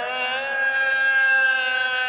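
A muezzin's voice over the mosque loudspeakers holding one long, steady note of the dawn call to prayer (adhan), swelling a little in the middle.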